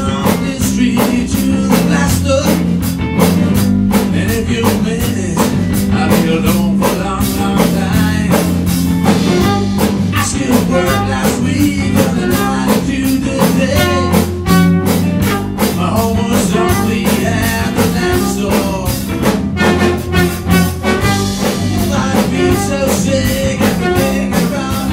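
A live band playing: drum kit, electric guitar and electric bass guitar, with a trumpet playing the lead line over them.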